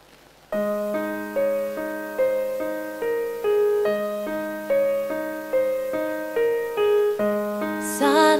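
Piano introduction to a slow ballad. It starts about half a second in, with notes struck at an even, unhurried pace of a little more than one a second over a held low note.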